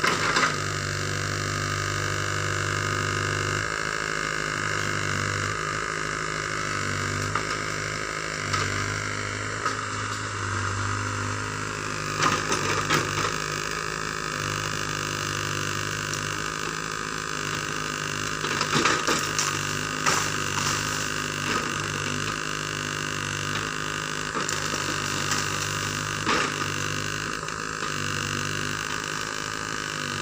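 Sumitomo SH75 mini excavator's diesel engine running steadily as it digs, with sharp knocks and scrapes of the bucket against soil and stones, loudest a little before halfway, around two-thirds of the way in, and near the end.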